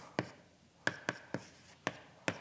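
Chalk writing on a blackboard: about five short, sharp taps and strokes of the chalk as numbers are written out.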